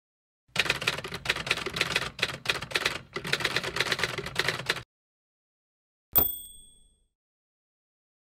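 Typewriter sound effect: rapid key strikes clattering for about four seconds with a brief pause in the middle, then a single bright bell ding that rings out and fades within a second.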